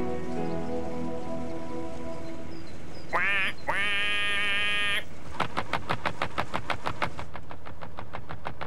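Soft held music notes fade out, then a comic duck quack sounds twice, a short wavering one and then a longer one. A quick run of light clicks follows, about seven a second, fading away.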